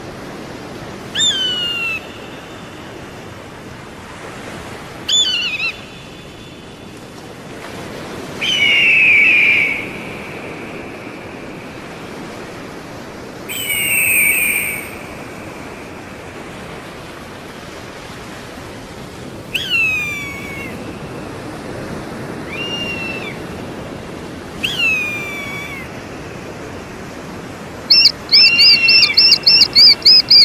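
Eagle calling: about seven high, downslurred whistled screams, one every few seconds, over a steady background hiss. Near the end a louder, rapid series of repeated call notes begins.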